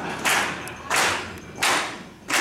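Hand claps keeping a slow steady beat, three claps about two-thirds of a second apart, each with a short ring of room echo.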